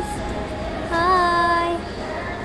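A high singing voice holds one note for about a second, starting about a second in, over a low steady background rumble.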